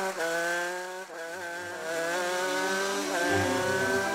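Cartoon race-car engine sound effect: a buzzy motor note that climbs slowly in pitch and starts afresh about three times.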